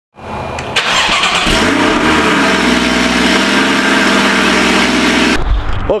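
A car engine starting, with a sudden jump to full loudness about a second in, then running loudly and steadily. It cuts off abruptly shortly before the end.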